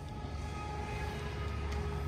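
Traffic on a nearby highway: a steady hum of vehicles with a low rumble, slowly growing louder.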